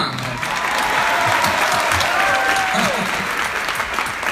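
Concert audience applauding steadily, with a few voices or whistles calling out over the clapping around the middle.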